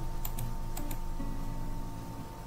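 A few light computer clicks, about four in the first second and two of them close together, over a faint steady hum.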